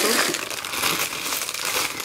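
Packaging crinkling and rustling steadily as it is handled.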